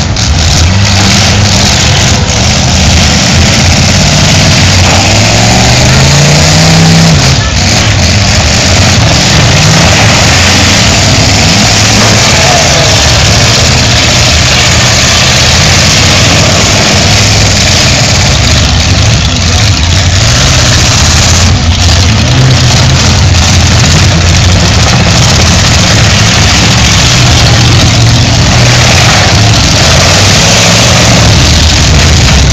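Engines of several full-size demolition derby cars running hard and revving, their pitch climbing several times as the cars drive and push against each other, over constant loud outdoor noise.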